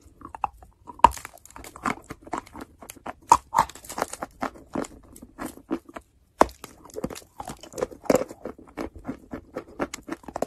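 Close-up biting and chewing of chalk coated in paste: many irregular, crisp crunches, the loudest a sharp snap about a second in, with a brief silent break a little after halfway.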